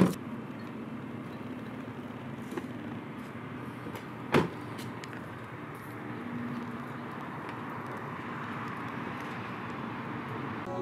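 An SUV's car door slams shut, followed about four seconds later by a second, softer thump, over a steady background rumble.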